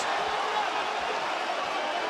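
Steady background noise of an arena crowd, with faint distant voices.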